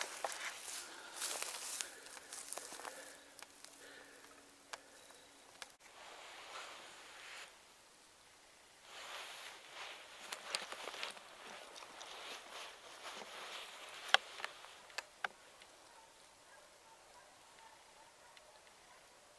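Rustling and light footsteps in dry grass, coming and going in patches, with scattered sharp clicks of the camera being handled; the loudest click comes about three-quarters of the way through.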